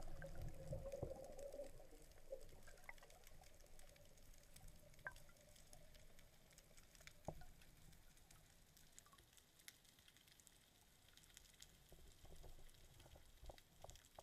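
Faint, muffled underwater sound through an action camera's waterproof housing: bubbles and water rushing past during a dive in the first couple of seconds, then near-quiet with scattered small clicks.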